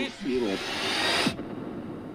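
Film-trailer sound effect for an earthquake splitting the ground open: a rushing noise that cuts off suddenly a little over a second in.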